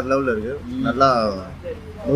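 A man's voice in two drawn-out, sliding vocal phrases with no clear words, sung or hummed, the first at the start and the second about a second in.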